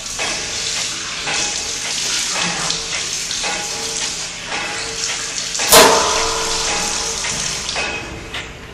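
Water running from a sink tap, splashing as someone washes at a washbasin. About six seconds in comes a single sudden loud hit, the loudest sound here, with a short ringing tail.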